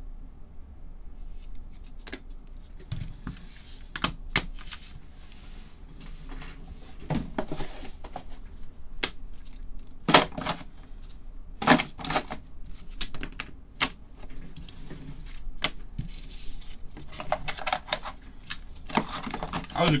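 Trading cards in plastic holders and graded slabs being picked up and set down on a table: irregular clicks and clacks, a few louder ones about halfway through.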